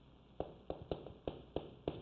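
Chalk tapping on a chalkboard while Chinese characters are written stroke by stroke: a quick, irregular run of short, faint taps beginning about half a second in.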